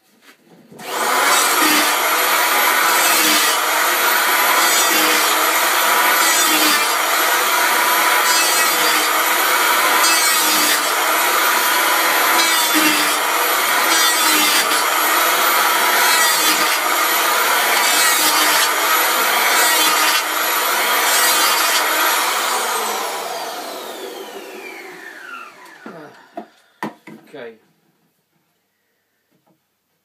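Electric hand planer starting up and cutting along a square maple blank in repeated passes, roughly a stroke a second, planing off its corners. Later it is switched off and the motor winds down with a falling whine, followed by a single click.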